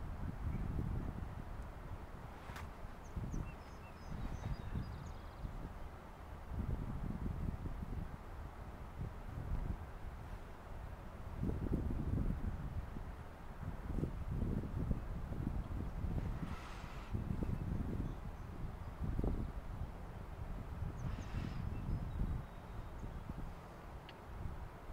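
Wind buffeting the microphone in uneven gusts, a low rumble that swells and fades every second or two, with a few faint high sounds over it.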